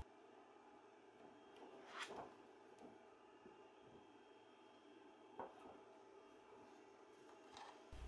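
Near silence: faint room tone, with two brief faint crinkles about two and five and a half seconds in from a thin one-layer 3D-printed plastic sheet being handled and flexed.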